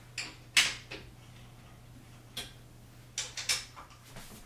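A handful of sharp clicks and knocks as the wooden changing table's parts and hardware are handled at its top rail during assembly, bunched in the first second and again near the end, over a faint steady hum.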